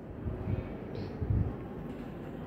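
Pencil writing a letter on a workbook page resting on a table, heard mostly as a muffled low rumble with two soft bumps from the strokes.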